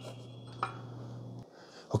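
Faint handling of a metal-and-plastic monitor arm head, with one light click about half a second in as the quick-release VESA plate is released, over a low steady hum; the sound drops away shortly after.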